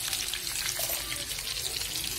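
Egg-battered cauliflower florets sizzling in hot oil in a frying pan: a steady hiss thick with fine crackles.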